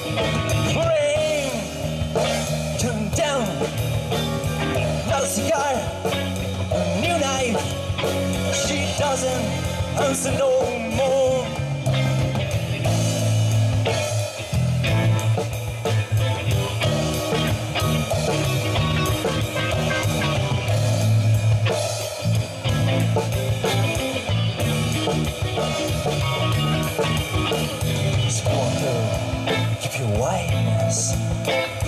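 Rock band playing live: electric guitar, bass guitar and drum kit. A wavering, bending lead line stands out over the steady bass notes and drums in the first half.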